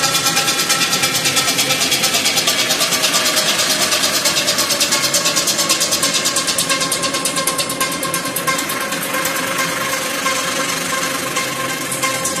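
Techno in a breakdown with the kick drum and bass dropped out: a fast, even ticking pulse over held synthesizer tones, fading a little toward the end.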